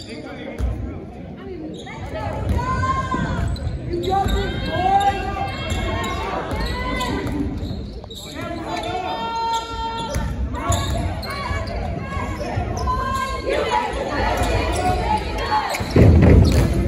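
Basketball bouncing on a hardwood gym court, with sneakers squeaking and players and spectators calling out, echoing in the large gym.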